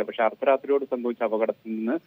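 Speech only: a news reporter's voice-over in Malayalam, talking without a pause.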